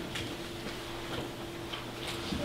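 Quiet room tone: a steady faint hum with a few soft ticks.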